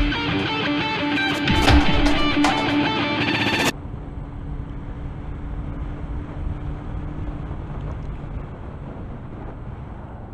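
Rock intro music with electric guitar that cuts off abruptly about a third of the way in. After the cut comes an on-board motorcycle recording: steady wind rush with a low engine hum underneath.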